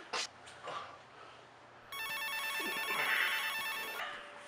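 Mobile phone ringing with an electronic ringtone, a quickly pulsing pattern of beeping tones that starts about two seconds in.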